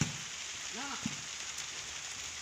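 Steady rain falling, an even hiss, with a brief distant shout and a single short knock about a second in.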